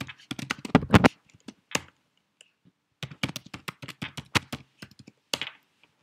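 Keystrokes on a computer keyboard: a quick run of key clicks, a pause of about a second, then a second run of clicks that stops shortly before the end, as a sudo command is typed in and a password entered.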